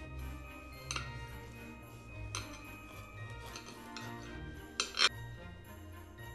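Background music, with a few sharp clinks from a bread knife on a ceramic plate as it cuts a loaf in half. The loudest clink comes about five seconds in, as the blade strikes the plate.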